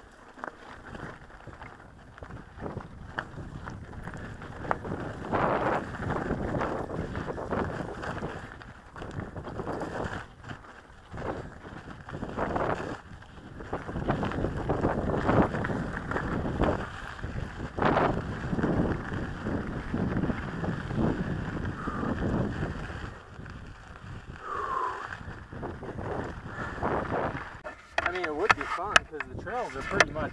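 Mountain bike rattling and clattering over a rocky trail at speed, with wind buffeting the camera microphone and irregular knocks from the wheels striking rocks. It quiets near the end as the bike comes to a stop.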